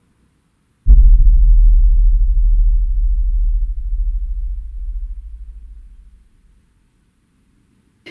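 A sudden, loud, deep boom with a sharp click at its start, rumbling very low and fading away over about five seconds.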